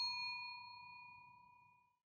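A single bell-like chime ringing out with a clear, pure tone that fades away steadily.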